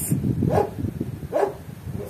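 Two short animal calls about a second apart, over a low steady background rumble.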